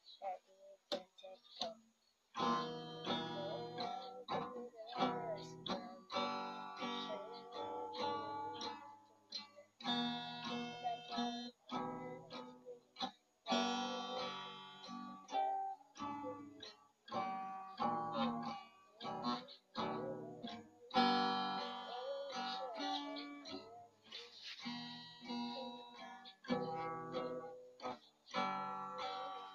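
Acoustic guitar strummed chord by chord, each chord ringing for a second or so with short breaks between. The first couple of seconds hold only a few faint plucks before the strumming starts.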